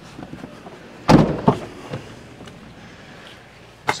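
A Ford Bronco door shut with a heavy thump about a second in, a smaller knock just after, then a sharp click of a door latch near the end.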